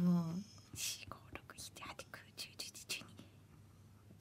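A voice trails off, then a man whispers under his breath, counting through a sum in his head; it fades to near silence near the end.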